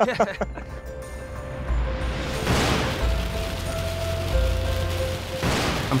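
Dramatic background score with held tones and low booming bass hits, with two whooshing swells that build and fade, one midway and one near the end.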